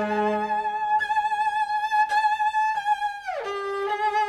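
Solo cello played high in its range: a long bowed note with vibrato, re-attacked a couple of times, then a downward slide of about an octave to a lower held note near the end. Low orchestral notes fade out at the start.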